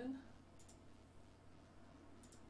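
A single computer mouse click, heard as a quick double tick (press and release) a little under a second in, over faint room tone.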